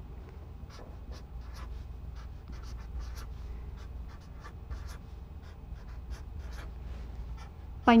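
Marker pen drawing tick marks and writing numbers on a white surface: a string of short, separate strokes, a few a second, over a faint low hum.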